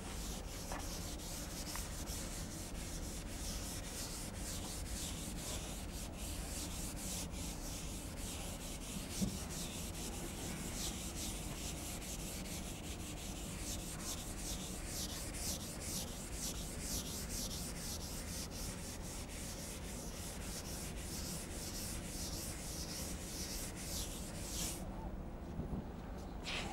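A chalkboard eraser rubbing across a chalkboard in repeated back-and-forth strokes, a steady scratchy hiss that stops near the end.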